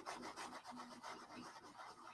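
Paintbrush loaded with acrylic paint rubbing over textured paper: a quick run of faint back-and-forth strokes, several a second.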